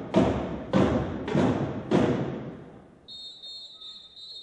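A drumline hits four heavy unison strokes, about half a second apart, each dying away in a reverberant hall. After a short lull, a steady high whistle sounds near the end.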